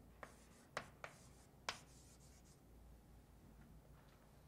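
Faint writing: a few short taps and scratching strokes of a writing tool on a surface, bunched in the first two seconds.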